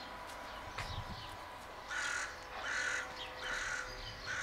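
Eurasian magpie calling: three harsh, rasping chatter notes about two-thirds of a second apart, beginning about two seconds in.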